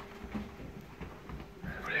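Quiet scuffling and shuffling footsteps on a hard floor as a man grabs a child and hurries him away, with a sharp click at the very start.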